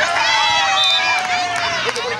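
Voices shouting during a beach volleyball rally: one long, high call held for nearly two seconds and falling slightly in pitch, with other voices calling over it.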